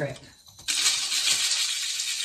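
Granular mineral substrate poured from a jar into a clear plastic pot: the grains run in a steady, even hiss that starts under a second in.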